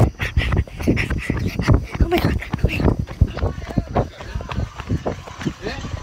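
A phone being jostled hard in a scuffle: a rapid, irregular run of thumps and knocks on its microphone, with wordless vocal sounds over them.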